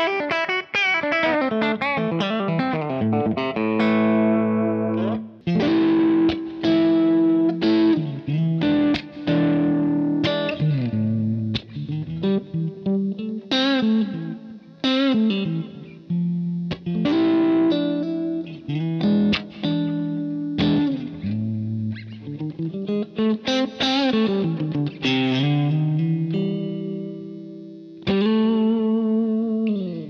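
Electric guitar with three S90 soapbar pickups played through a Kemper Profiler with a lightly overdriven tone: melodic lead phrases with string bends and sustained notes, broken by short pauses.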